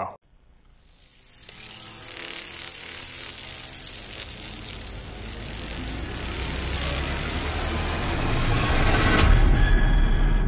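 Intro of a metal band's music video played back: a noisy swell that builds steadily in loudness over several seconds, with a deepening low rumble, peaking near the end.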